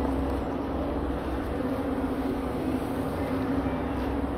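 Steady low outdoor rumble with an even hiss above it, with no distinct events in it.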